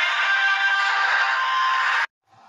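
Electronic intro music, dense and steady with many held tones, that cuts off abruptly at the end.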